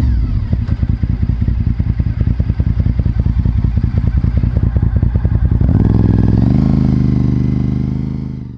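2004 Honda RC51's 1000cc V-twin engine running at low revs with distinct separate beats as the bike slows for a stop sign. About six seconds in, the revs rise as it pulls away through a turn.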